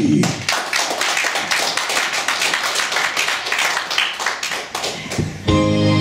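Audience applauding for about five seconds. Near the end the instrumental intro of the song starts, with held, sustained chords.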